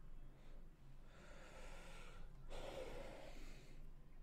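A man breathing hard from the strain of a heavy set of lat pulldowns near failure, faint: two long, hissy breaths, one after the other.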